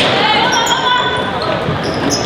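Basketball game sound in an echoing gymnasium: crowd and player voices over the action, with the ball and sneakers sounding on the hardwood court.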